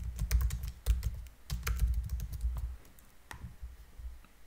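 Typing on a computer keyboard: a quick run of keystrokes for about the first two seconds, then a few separate clicks.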